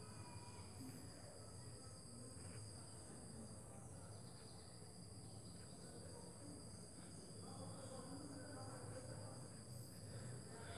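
Faint, steady high-pitched insect chirring over a low hum, in an otherwise near-silent room.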